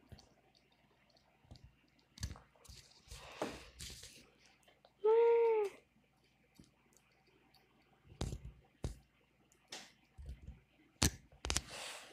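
Scattered sharp clicks and taps of copper wire being snipped with wire cutters and handled on a tabletop. A short hummed "mm" about five seconds in is the loudest sound.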